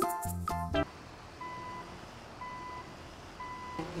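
Children's music stops about a second in. A truck reversing beeper then sounds three times, one steady high beep each second. A new tune starts just before the end.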